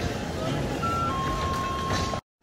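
City street ambience: a steady wash of traffic and passers-by. About a second in, a short electronic tone steps down to a lower note that is held until near the end.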